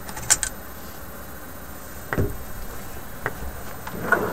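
Old AA batteries being pulled out of a plastic battery holder: a sharp click just after the start, a duller knock about two seconds in, and a faint tick a second later.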